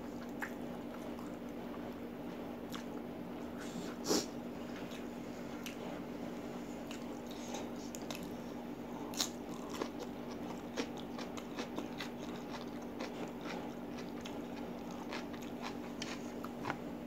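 A person eating close to the microphone: chewing noodles and biting crisp raw cucumber slices, with scattered sharp mouth clicks and one louder bite about four seconds in, over a steady low hum.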